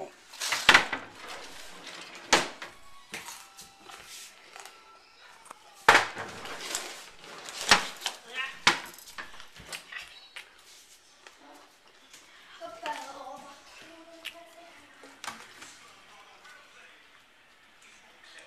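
Sharp knocks and clatter of things being handled in a kitchen, a handful of separate hits in the first nine seconds, then faint talk in the background.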